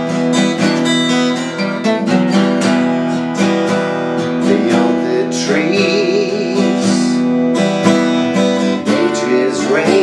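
Acoustic guitar playing chords in a steady rhythm, each chord plucked or strummed with a clear attack and left ringing.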